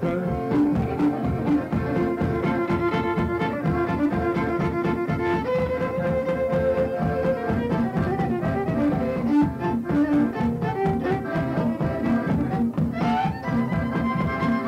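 Fiddle, accordion and guitar playing a tune together: held notes that change in steps over a steady strummed rhythm.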